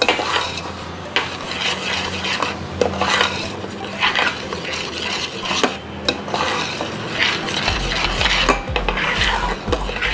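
Metal spoon stirring a thick cocoa-and-cream mixture in a stainless steel pot, scraping along the pot's sides and bottom with frequent small clinks of metal on metal. The mixture is thickening toward a dough-like consistency.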